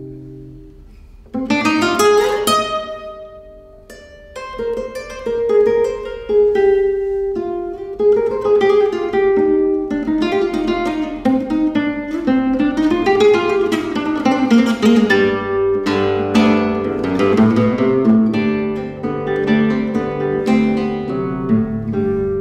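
Solo classical guitar played fingerstyle: a held chord dies away, then about a second and a half in a sharply strummed chord opens a run of fast plucked melodic passages in a Spanish style.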